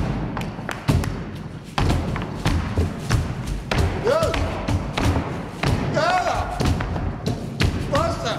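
Dancers' feet stamping and stepping on a wooden floor in an irregular run of thuds, with short shouted vocal calls a few times, about four and six seconds in and near the end.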